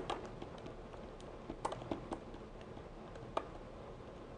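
Pen or stylus tapping on a writing tablet as a word is written: about half a dozen faint, scattered clicks over a low hiss.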